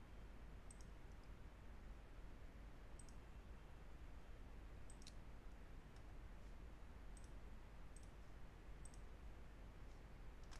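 Computer mouse buttons clicking, about six faint single clicks a second or two apart, over a faint steady room hiss.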